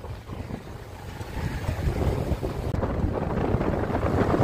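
Wind buffeting the microphone of a rider on a moving motorbike, over a low road and engine rumble. It grows louder over the first couple of seconds.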